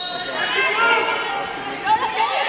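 Voices shouting and calling out from the side of a wrestling mat, overlapping and echoing in a gymnasium: coaches and spectators urging the wrestlers on.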